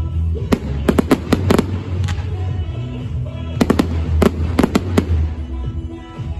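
Fireworks going off: a rapid run of sharp bangs and crackles in two clusters, about a second in and again around four seconds in, over music playing throughout.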